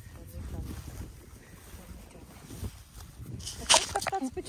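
A horse's muzzle mouthing and rubbing against the phone, giving a muffled rumbling rub on the microphone, with a sharp loud scrape near the end.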